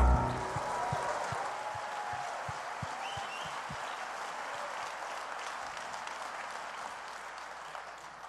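Church congregation applauding after the worship band's final chord cuts off right at the start, the clapping slowly fading away.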